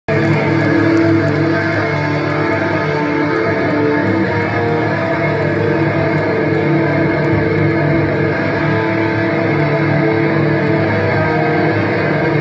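Loud live electric guitars and bass holding a steady, droning chord through the PA, with no drum beat.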